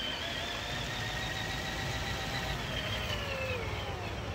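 Power drill motor spinning a paint-covered canvas: a steady whine that drops in pitch near the end as the drill slows down.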